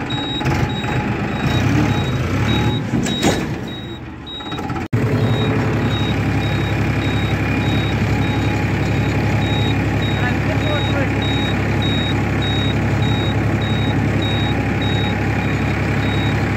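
Farmtrac 42 HP tractor's diesel engine running steadily under way. It is broken by a brief dropout about five seconds in, after which the engine note stays even. A short high beep repeats about twice a second throughout.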